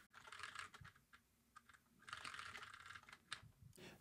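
Faint computer keyboard typing: quick runs of key clicks, a short burst at the start and a longer one through the second half, with one sharper click near the end.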